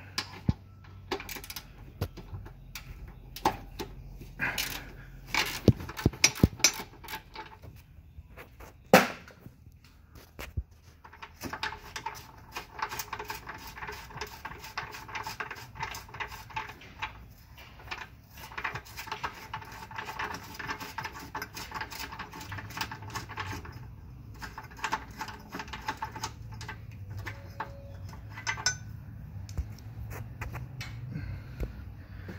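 Hand ratchet wrench clicking rapidly in long runs while working a rear motor-mount bolt, with scattered metal tool clanks and one sharp knock about nine seconds in.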